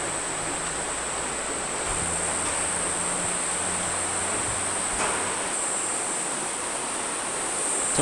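Rainforest ambience: a steady high-pitched insect drone over an even hiss, with a faint low hum underneath.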